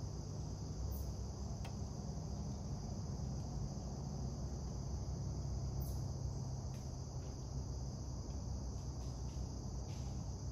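Steady insect chorus, a constant high-pitched trill, over a low rumble, with a few faint clicks.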